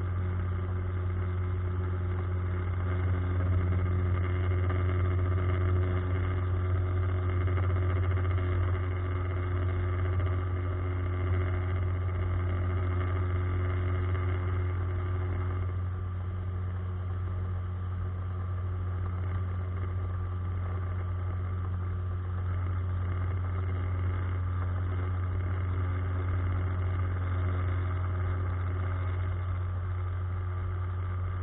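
9.9 hp Mercury outboard motor running steadily under way, a low, even drone. Some of its higher overtones fade and it gets slightly quieter about halfway through.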